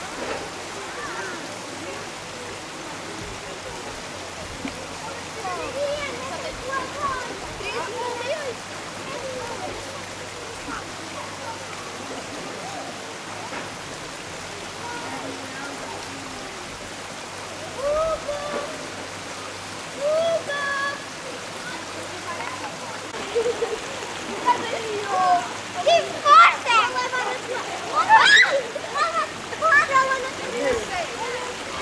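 Steady rush of river water running over a weir, with scattered voices of bathers in the background that grow busier and louder over the last several seconds.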